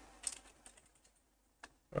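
Typing on a computer keyboard: a short run of faint keystrokes, then one sharper click near the end.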